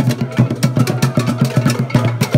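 Skin-headed wooden hand drums played in a fast, even beat of about seven strikes a second.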